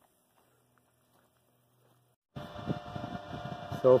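Near silence for about two seconds, then a sudden start of steady background noise with a faint hum. A man's voice comes in near the end.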